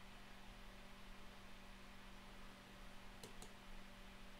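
Near silence with a steady low hum, broken near the end by two faint clicks in quick succession: keystrokes on the terminal's keyboard.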